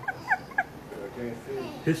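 High-pitched stifled giggling: a quick run of short, squeaky notes, each falling in pitch, that trails off about half a second in, followed by faint murmuring voices.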